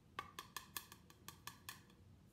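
A quick run of about eight sharp plastic clicks and taps as a jar of Coty Airspun loose face powder and its lid are handled and opened, over about a second and a half.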